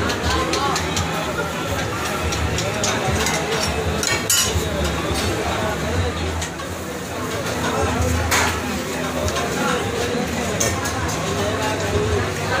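Busy street-food stall ambience: background chatter over a steady low hum, with a few sharp metallic clinks of utensils.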